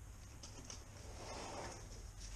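Faint handling of a cardboard shipping box, with a few light taps and soft rustles over a low steady background hum.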